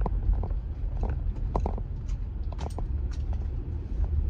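Steady low rumble of a vehicle heard from inside its cab, with a few faint clicks and light rattles.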